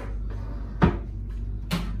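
Hinged wooden lid of a yacht cabin's dressing table being shut and handled, two knocks about a second apart, the first with a low thud, over a steady low hum.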